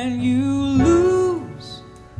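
Live jazz band music with a woman's voice singing long held notes over the band. The sung phrase ends about a second and a half in, and the music is quieter after it.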